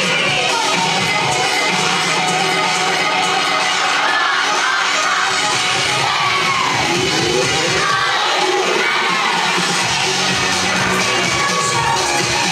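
Dance music playing loudly, with a crowd of children shouting and cheering over it.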